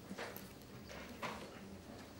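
Two faint knocks about a second apart, the second louder, over quiet room noise.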